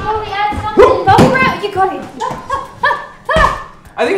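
Short wordless vocal sounds, yelps and grunts, with a few thumps about a second in, as of someone struggling with something.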